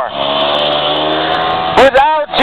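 A motor vehicle driving past close by: a steady engine note that sinks slightly in pitch as it goes, lasting nearly two seconds.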